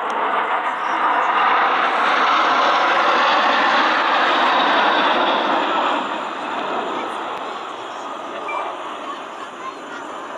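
Jet noise from a formation of L-39 Albatros trainer jets passing over. It is loudest through the first half and fades away after about six seconds.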